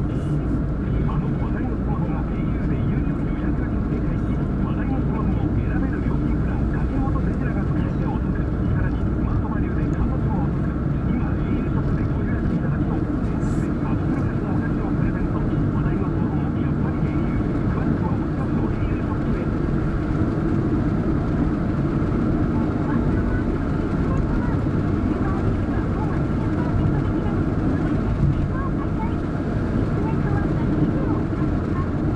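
Steady engine and tyre rumble of a car driving on an asphalt road, heard from inside the cabin, at an even level throughout.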